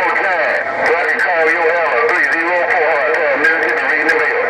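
Garbled, unintelligible voice of another station coming over the President HR2510 radio's speaker, thin and tinny over a steady hiss of static.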